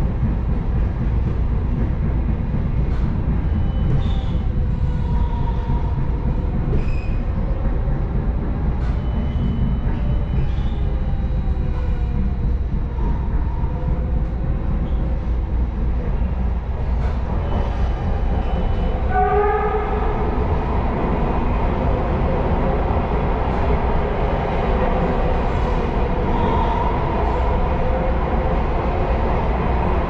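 MARTA rapid-transit train heard from inside the car while running: a steady low rumble of the wheels on the track, with faint wavering whining tones over it. About two-thirds of the way through, a set of stronger, higher tones comes in sharply and holds to the end.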